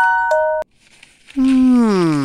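A few bright, chime-like ringing notes cut off about half a second in. After a short pause, a single drawn-out voice-like tone slides steadily down in pitch.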